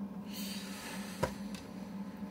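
Metal Blu-ray steelbook case being opened by hand, with one sharp click a little over a second in.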